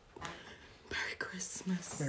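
Whispered, breathy speech, with a couple of short voiced syllables in the second half.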